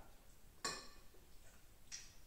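Two light clinks of a metal spoon against dishes, about a second apart.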